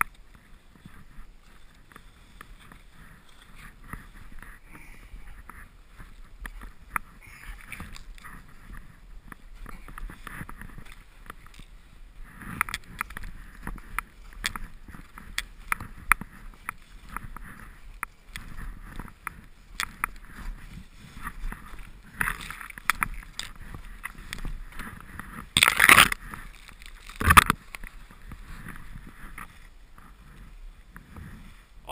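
Someone struggling on foot through deep powder snow: irregular crunches and scrapes of snow and the rustle of clothing close to the camera, getting busier about halfway through, with two louder brushes or thumps against the camera near the end.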